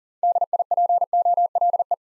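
Morse code at 40 words per minute, a single steady tone keyed into dots and dashes, spelling the word DIPOLE.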